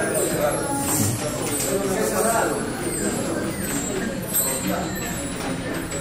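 Indistinct hubbub of many guests talking at once, with no single voice standing out.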